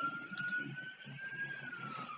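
A faint siren wail: one long tone that rises slowly and then falls away near the end.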